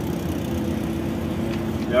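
Truck engine running at low speed, heard from inside the cab as a steady hum.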